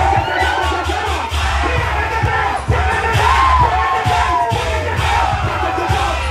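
Loud dance music with a heavy bass beat, under a crowd yelling and cheering on a vogue dancer.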